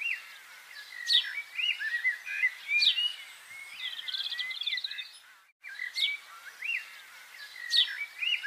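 Birds chirping: a high, falling call comes back every second or two, with shorter, lower chirps in between and a brief fast trill about four seconds in. The sound cuts out for a moment just past halfway.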